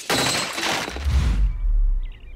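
Cartoon sound effect: a loud, noisy rushing crash that fades after about a second and a half, under a deep rumble that swells in the second half.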